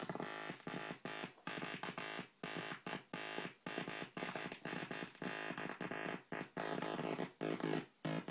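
Serge modular synthesizer comparator patch mixing an oscillator's saw wave with the Dual Random Generator's noise output. The result is a buzzy pitched tone chopped on and off irregularly several times a second, a Morse-like effect in which the pitch breaks up.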